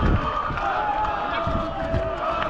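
Several men's voices shouting and calling out at once in drawn-out, overlapping calls, the shouting of players and onlookers just after a goal.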